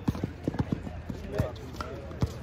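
Basketball bouncing and sneakers stepping on an outdoor hard court: an uneven run of sharp knocks, with players' voices briefly in the middle.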